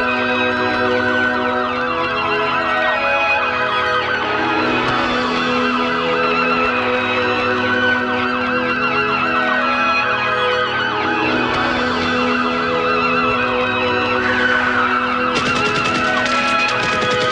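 Wailing siren sweeping slowly up and down, several wails overlapping, over sustained synthesizer chords in an electronic soundtrack track. Near the end a fast, crisp pulsing rhythm comes in.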